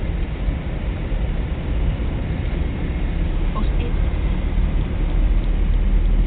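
Car in motion heard from inside the cabin: a steady low rumble of engine and road noise.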